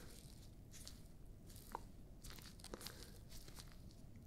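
Gloved hands in exam gloves faintly rustling and crinkling close to the microphone, with a few soft, scattered crackles.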